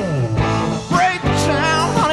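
Rock band playing live, with electric guitar, bass and drums in a slow groove. A note slides down in pitch near the start, and wavering high notes follow about a second in.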